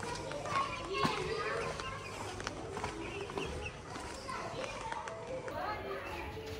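Children's voices chattering and calling as they play nearby, several voices overlapping, with no clear words.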